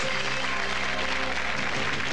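Studio audience applauding over a game-show music sting of held chords, marking a game won.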